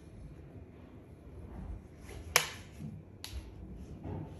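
A sharp click about two and a half seconds in, the loudest sound here, and a fainter one about a second later, as hairdressing tools (a flat iron and a metal sectioning clip) are handled between passes on the hair; a low steady background sits underneath.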